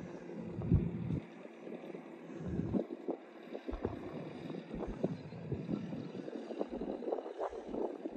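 Wind buffeting the microphone in irregular low gusts, with a few faint knocks.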